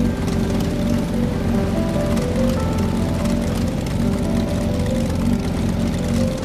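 Steady motorbike engine running as a cartoon sound effect, under background music with a simple stepping melody.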